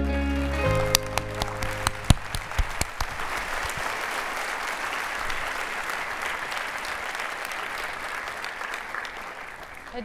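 The last held chord of soft background music, which stops less than a second in, then an audience in a large hall applauding, slowly fading away.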